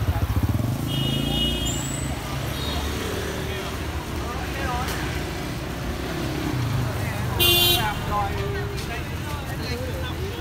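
Street traffic with a steady low engine rumble, a short vehicle horn toot about a second in and a louder horn honk about seven and a half seconds in.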